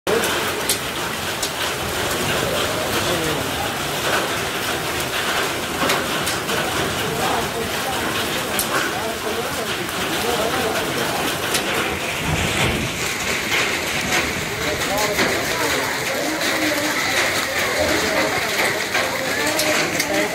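Hail falling steadily: a dense hiss with frequent sharp ticks as hailstones strike bricks, ground and tarpaulin. Voices talk faintly underneath, more in the second half.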